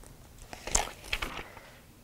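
Paper pages of a small notebook being leafed through by hand: a few quick, crisp rustles about half a second to a second and a half in.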